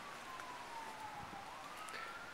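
Distant emergency-vehicle siren wailing: a single tone that falls slowly in pitch, then starts rising again about a second and a half in.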